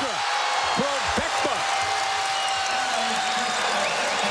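Basketball arena crowd cheering and shouting through a fast break that ends in a dunk, over a steady wash of crowd noise.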